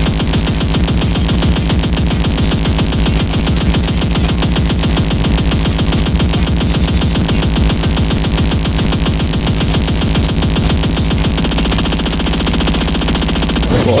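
Speedcore music: a relentless stream of very fast, evenly spaced distorted kick drums over a sustained synth tone. A German vocal sample ('Boah') cuts in right at the end.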